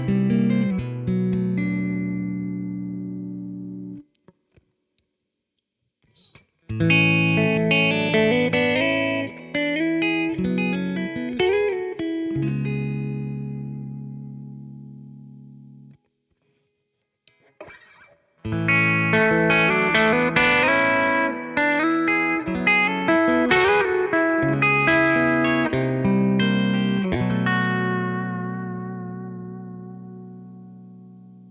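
Tom Anderson Raven electric guitar with soapbar-style hum-cancelling pickups, played through an amp in short phrases of notes and chords, each ending in a chord left to ring out. The first phrases are on the neck pickup. After a two-second pause about halfway, the last phrase is on the middle pickup position.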